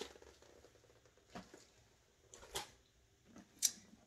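A few brief rustles and clicks from a clear plastic pouch and bag contents being handled and set aside: three short sounds spread through a quiet stretch, the last the sharpest.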